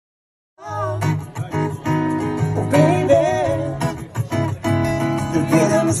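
Music starts about half a second in: strummed acoustic guitar with a voice singing, a cover band performing a song.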